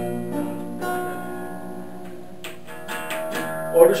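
Acoustic guitar played softly by a player lying down with it resting on his body. A chord rings on and slowly fades, with a few new notes struck along the way.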